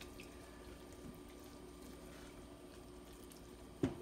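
Faint wet stirring of cooked beans in a nonstick skillet with a silicone spatula, over a steady low hum, with a sharp knock just before the end.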